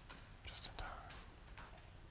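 A faint whispering voice, a few soft hissy syllables in the first second.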